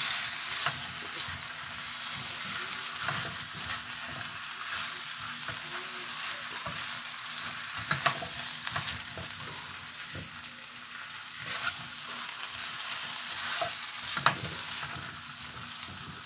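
Chicken and vegetables sizzling in a frying pan while a spatula stirs and scrapes through them, with a couple of sharp knocks of the spatula against the pan, about eight seconds in and again near the end.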